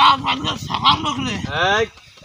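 A man's voice in loud, wavering, nasal cries with no clear words, the put-on voice of the possessed man in a jinn-exorcism act. The cries stop near the end.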